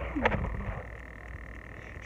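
A knock, then a brief low vocal murmur that falls in pitch, at the start; after that only a faint steady high whine and hum remain.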